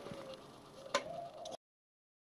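Quiet workbench room tone with a faint steady hum and a single sharp click about halfway through, likely from handling the opened reel-to-reel recorder; the sound then cuts off suddenly to silence.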